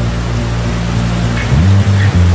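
Rushing, crashing water sound effect laid over music with a held low bass note. About one and a half seconds in, the bass starts to pulse.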